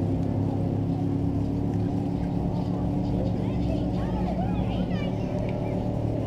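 Keyboard holding a steady low chord of several sustained notes, with a few faint short chirps higher up about midway through.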